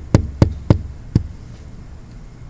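Sharp taps on a tablet's touchscreen, picked up loudly by the device's own microphone. There are about three taps a second, and they stop a little after one second in.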